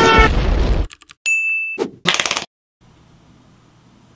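Edited-in comedy sound effects: a loud noisy rush for about the first second, then a short bell-like ding, then a brief buzzing rattle. Only faint hiss remains for the last second and a half.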